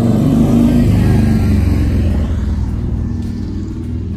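A motor vehicle passing close by on the street, its engine loudest in the first two seconds and then fading away.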